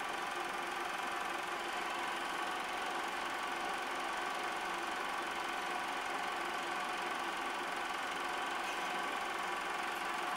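Super 8 film projector running: a steady mechanical whir and clatter from its motor and film-advance mechanism, unchanging throughout.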